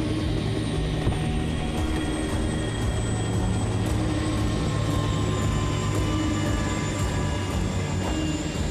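Helicopter running steadily on the ground, a continuous low engine and rotor hum with a faint, even beat, under quiet background music.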